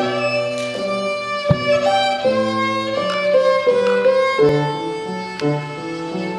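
A child's violin recital piece, bowed note by note in a steady, flowing melody.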